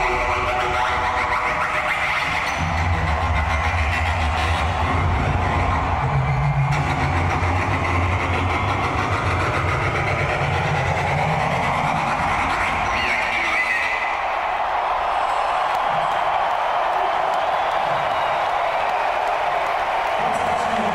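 Live hip-hop music over an arena PA with a heavy bass line; the bass drops out about two-thirds of the way through, leaving the arena crowd's noise.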